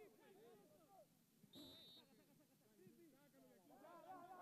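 Faint shouting of several players on a football pitch, with one short, high referee's whistle blast about a second and a half in.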